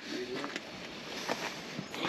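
Quiet outdoor background noise with a few faint clicks.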